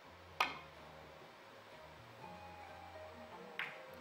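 A three-cushion billiard shot: a sharp click with brief ringing as the cue tip strikes the ball about half a second in, then a quieter click of balls colliding near the end.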